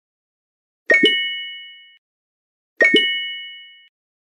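Animated subscribe-button sound effects. Twice, a quick double click is followed by a bright bell-like ding that rings out over about a second.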